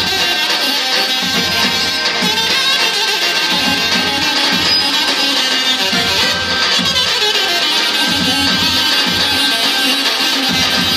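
Live band playing dance music through a PA, with an accordion, loud and unbroken.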